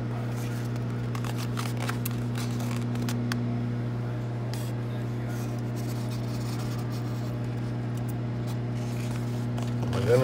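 A steady low electrical hum from a kitchen appliance, with light scrapes and soft clicks as slices of sausage are slid off a paper plate into a stainless steel thermos.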